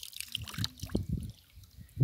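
Water trickling and dripping out of a plastic bottle fish trap as it is held up out of the water, with small irregular knocks from the bottle being handled.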